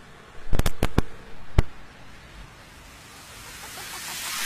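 Five sharp knocks and clicks from a hand on the studio condenser microphone and its arm, bunched in the first second and a half. Near the end a rising swell of noise builds as the electronic dance track starts.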